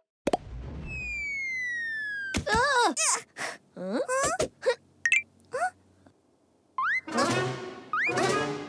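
Cartoon sound effects: a soft thud, then a long falling whistle, then a run of short bending squeaks, pops and boing-like sounds. Near the end, brass-led cartoon music starts with rising slides.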